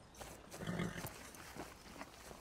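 A saddled horse making a short low sound about two-thirds of a second in, amid faint light footsteps of someone running over grass.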